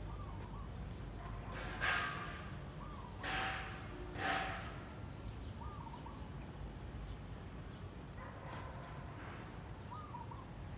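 Three loud, harsh animal calls about a second apart in the first half, with short faint chirps from small birds scattered throughout and a thin, steady high-pitched tone near the end.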